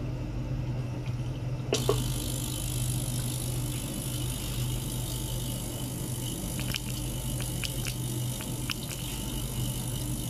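Small ultrasonic cleaning tank running with a steady low hum. About two seconds in a steady hiss rises over it, and a few light ticks follow in the second half.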